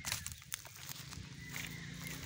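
A few sharp clicks and scuffs from a handheld phone being moved, then a faint low engine hum coming in about a second and a half in.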